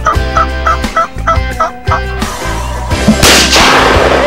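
Wild turkey gobbling, a quick series of six or seven short calls over background music, followed about three seconds in by a loud, sudden burst of noise.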